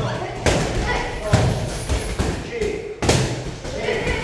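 Boxing gloves punching focus mitts and heavy bags: a series of sharp impacts, roughly one a second, irregularly spaced.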